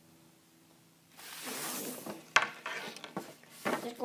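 About a second of near silence, then a rustle, then several sharp knocks and taps of a hockey stick being handled and moved about.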